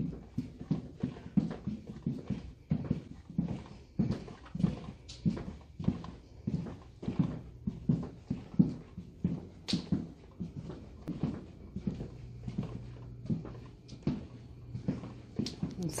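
Footsteps walking at an even pace along a hard-floored hallway, about two to three steps a second, over a faint low hum.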